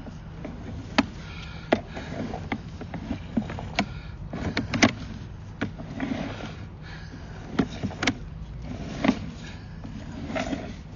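Sewer inspection camera's push cable being pulled back out of the drain line. Irregular sharp clicks and knocks, the loudest about a second in, near the middle and near the end, over a low steady hum.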